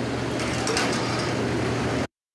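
Commercial kitchen ambience: a steady hiss with a low hum underneath.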